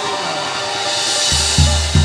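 Samba band's drum kit playing: cymbals ringing, then deep bass drum strokes coming in past the middle.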